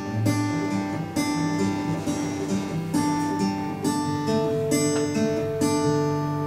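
Acoustic guitar played live, strummed chords struck every half second to a second and left to ring: the instrumental introduction of a slow song, before the singing comes in.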